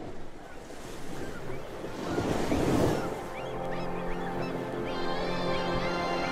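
Recorded intro of a 1980 German pop song: sea surf surging in, swelling to a peak about halfway, with short bird cries over it. From about three and a half seconds, sustained music chords come in and build beneath the fading surf.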